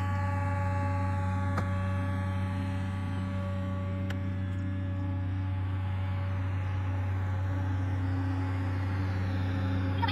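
Komatsu PC200LC excavator's diesel engine running steadily with a constant low hum while the machine lifts and swings a slung bundle of pipes, with a faint tick or two.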